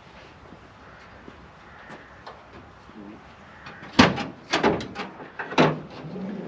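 The steel hood of a 1968 Chrysler 300 being unlatched and raised: a sharp metallic clunk about four seconds in, a few quick clicks just after, and a second clunk shortly before the end.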